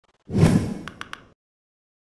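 Channel-logo sting sound effect: a deep whoosh that swells in suddenly and fades over about a second, with three quick ticks near its end.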